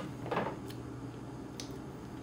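Faint mouth sounds of a person eating ice cream: a short breathy sound about a third of a second in, then a few soft lip and tongue clicks.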